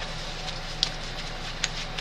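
Room tone: a steady low hum and hiss, with two faint short ticks a little under a second apart.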